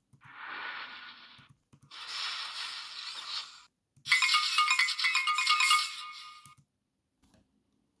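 Three bursts of electronic sound effects: two short noisy bursts, then a longer stretch of rapid electronic beeping that stops suddenly a little past the middle.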